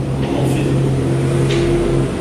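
A steady low hum, with two faint brief scratchy sounds about half a second and a second and a half in.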